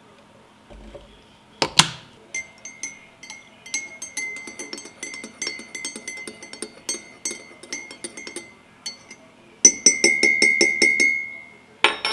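A metal teaspoon stirring coffee in a ceramic mug, clinking against the inside of the mug several times a second, and the mug rings with each clink. A single sharp clink comes just before the stirring starts. A faster, louder run of clinks comes near the end.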